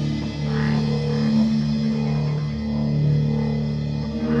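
Live rock band with electric guitar and bass playing an instrumental passage: low notes held steady, with no clear drum beat.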